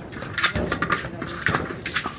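A hard plastic ball knocking against a concrete floor and metal pen fencing as a dog shoves it around: four or five sharp knocks, with scuffling in between.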